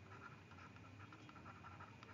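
Faint scratching and light ticks of a stylus writing a word on a tablet surface.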